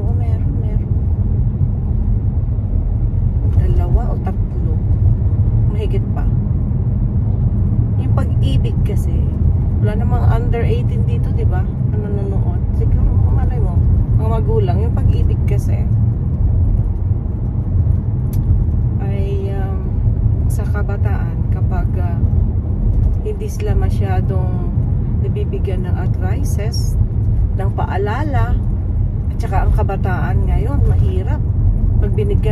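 Car cabin road noise while driving: a steady low rumble from the tyres and engine heard inside the moving car.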